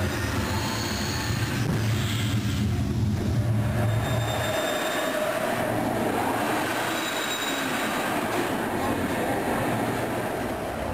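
Steady mechanical rumble and hiss of a theme-park ride, with faint high squeals like steel wheels on track. The low rumble drops away about halfway through.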